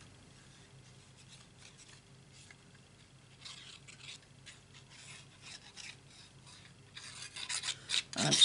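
Faint scratchy rubbing of a liquid glue bottle's nib drawn along the edges of embossed cardstock, with the card being handled; the scratching gets busier in the second half and most of all near the end.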